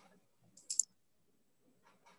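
A short, sharp double click about three-quarters of a second in, over faint room noise.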